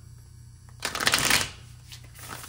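A deck of tarot cards being shuffled by hand: one short flurry of card-on-card flicks, about a second in, lasting under a second.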